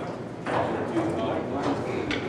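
Indistinct crowd chatter filling a bar's pool room, with a couple of short hard clicks, the clearest about half a second in.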